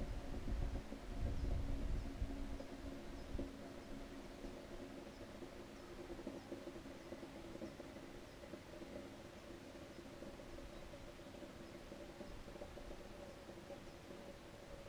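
Fuel oil running through a shaker siphon hose from a raised can into a Kubota B7000 tractor's fuel tank: a faint, steady flow, with some low rumble in the first few seconds.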